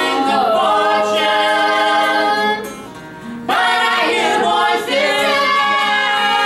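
Four women singing in close vocal harmony, holding long chords. An acoustic guitar plays underneath. The voices break off briefly about halfway through, then come back in together.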